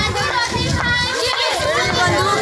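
Many children's voices chanting slogans together, loud and overlapping with no break.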